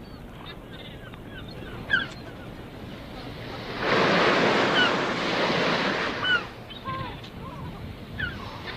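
Sea waves washing onto a shore, swelling louder for a couple of seconds about halfway through, with short high cries over the surf.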